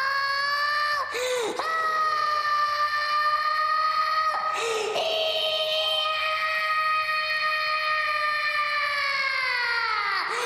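A person's voice holding one long, high, drawn-out "hoyah" yell. The voice catches briefly about a second in and again around five seconds, and the pitch sags near the end.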